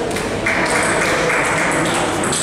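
Busy table tennis hall: a steady murmur of voices and taps of balls from play nearby, with a held higher-pitched sound lasting about a second.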